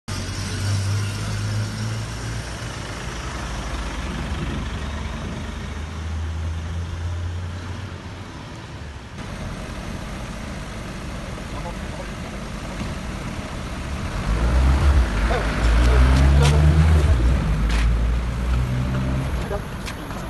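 Motor vehicle engines running on a street. A pickup truck's engine hums steadily as it drives past, and about fifteen seconds in a louder, deeper engine runs close by for a few seconds.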